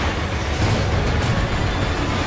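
Film trailer sound effects: a loud, dense low rumble of racing machinery with a few quick rushes, mixed over music.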